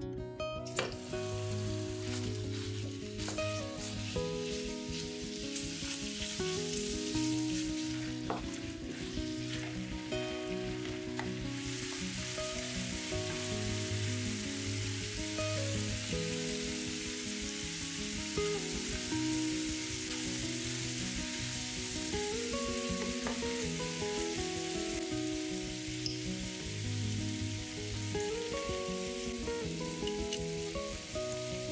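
Minced beef frying in sunflower oil in a nonstick pan: a steady sizzle that starts about a second in as the meat goes into the hot oil and grows louder about twelve seconds in, with a few light clicks. Background music plays underneath.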